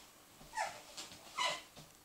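A dog whimpering: two short, high whines falling in pitch, about a second apart.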